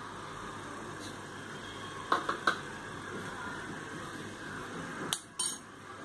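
A spoon clinking lightly against a stainless steel bowl as paste is added to beaten egg: two short clinks about two seconds in and two more near the end, over a steady background hiss.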